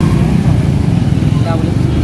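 Steady low outdoor rumble by a roadside, with a faint voice speaking briefly midway.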